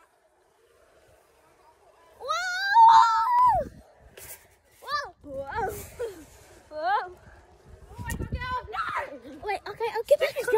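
After about two seconds of near silence, a child gives a long, wavering yell, followed by shorter whoops and shouts while riding a zip line. Rumbles of wind on the microphone come in among the shouts.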